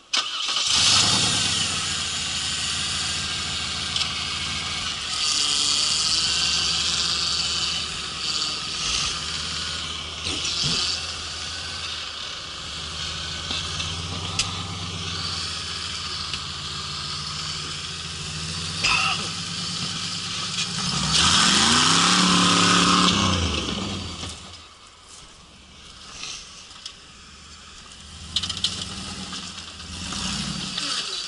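Rock-crawling buggy's engine working as it climbs a rocky slope, running steadily under load with throttle surges. Past the two-thirds mark comes the loudest moment, a rev that rises and falls over about two seconds, before the engine settles lower.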